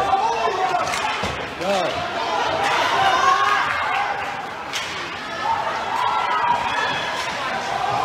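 Live ice hockey heard from the stands of a rink: voices calling and shouting, with scattered sharp knocks of sticks and puck against the boards.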